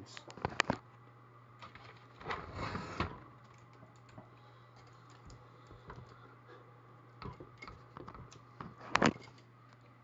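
Clicks, knocks and clatter of a heavy IBM Selectric typewriter being lifted and tilted by hand: a few sharp clicks just after the start, a longer clatter about two to three seconds in, and one loud knock near the end, over a steady low hum.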